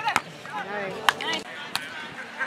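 Three sharp slaps of hands and forearms striking a beach volleyball during a rally, the loudest just past the middle, with voices calling around them.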